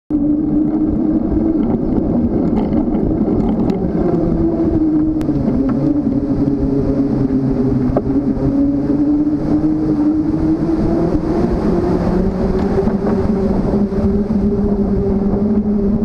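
Wind and riding noise on a camera mounted on a moving bicycle: a steady rumble with a hum that drifts slowly up and down in pitch, and a few faint ticks early on.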